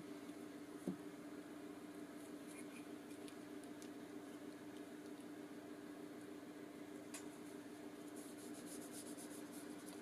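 Faint scraping and rubbing of a glue stick being worked over tissue paper on a paper card, with a light click about a second in. A steady low hum runs underneath.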